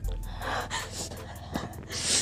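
A woman crying, with several short, sharp gasping breaths as she sobs.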